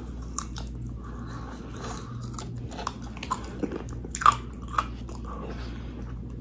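Close-up chewing and biting of fried chicken, with scattered small crunches of the breaded crust and a few sharper crunches about four to five seconds in.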